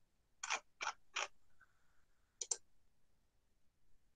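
Short sharp clicks at a computer: three single clicks about a third of a second apart, then a quick double click about a second later, with near silence between.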